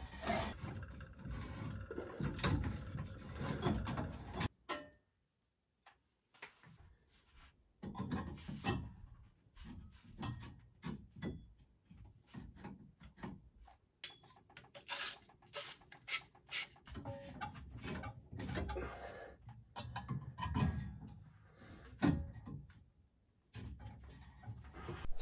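A mini tubing cutter turned around copper pipe, making an intermittent scraping with small clicks and knocks of metal on metal as the pipe and fittings are handled. The sounds stop for a few seconds about four and a half seconds in.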